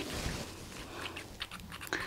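Faint, irregular clicks of a plastic cologne atomizer's pump being pressed with nothing spraying out: the sprayer is stuck.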